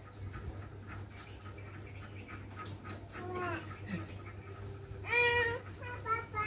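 A cat meowing: a short, falling call about three seconds in, then a louder, longer meow near the end.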